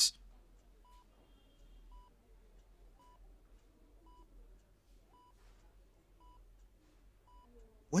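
Hospital patient monitor beeping softly about once a second, a short, even electronic beep at a single pitch, over a faint low room hum.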